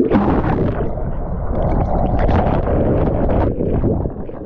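Loud, continuous rushing and churning of whitewater as a large breaking wave washes over the board-mounted camera, which is dunked underwater and comes back up into the foam.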